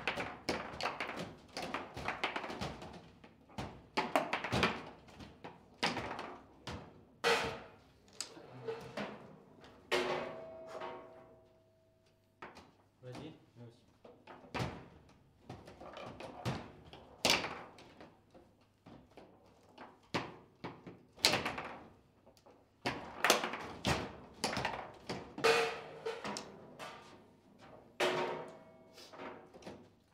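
Table football (foosball) play: the ball cracking off the plastic figures and the table walls, with rods clacking, in a rapid, irregular run of sharp knocks, some much louder than others. Goals are scored, so the ball also drops into the goal.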